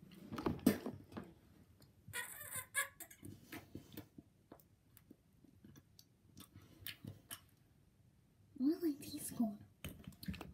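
A young girl's voice making short vocal sounds close to the microphone, one near the start and one near the end, with scattered small clicks and handling noises in between.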